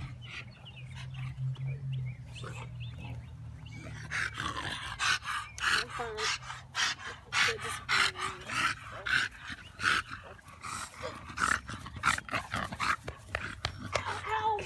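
A bully-breed dog panting hard through an open mouth, in quick, even breaths about two a second, starting about four seconds in.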